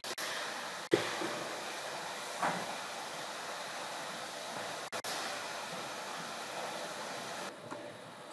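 Steady background hiss from the narrator's microphone, with a faint click about a second in.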